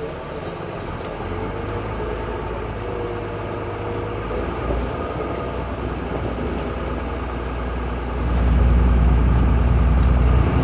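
A boat's inboard engine running steadily with a low drone, growing noticeably louder about eight seconds in.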